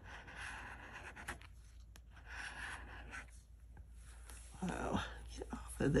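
A metal bottle opener scraping the scratch-off coating from a lottery ticket, in repeated rasping strokes about a second long.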